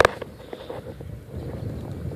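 Low, uneven rumble of wind buffeting the microphone, with one sharp click at the very start.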